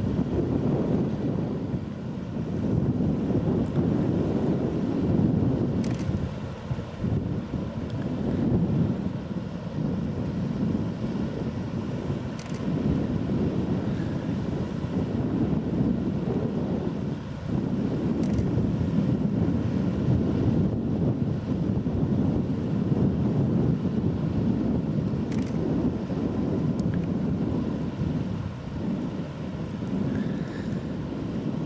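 Wind buffeting the microphone: a low, uneven rumble that swells and dips every few seconds.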